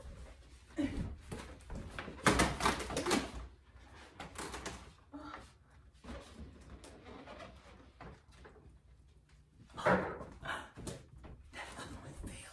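A latex balloon being handled and pressed onto a wall, with rubbing and squeaking sounds and several sudden knocks, the loudest cluster about two to three seconds in and another near the end.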